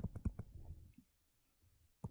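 A few light, sharp clicks of a stylus tapping on a tablet screen while writing, in the first half second, then near silence.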